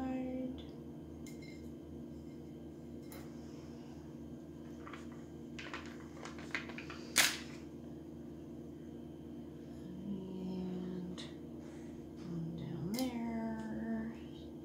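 Scattered sharp clicks and taps from handling a glass wine bottle while pressing window-cling stickers onto it, the loudest about seven seconds in, over a steady low hum.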